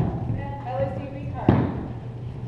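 A single sharp thud about one and a half seconds in, with a short ring from the hall after it: a drill boot stamped on the hardwood gym floor as a cadet halts in line. A voice calls out just before it.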